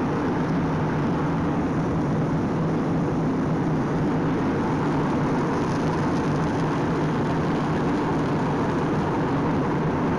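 Jet airliner cabin noise in flight: a steady, even rush of engine and airflow noise with a low hum, heard from inside the cabin.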